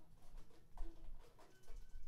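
Sparse, quiet free-improvised playing by a small band: a few short, soft pitched notes and faint clicks over a low rumble.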